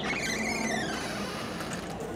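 Creaky door hinge squealing: one high squeal that rises and then falls in pitch, lasting about a second.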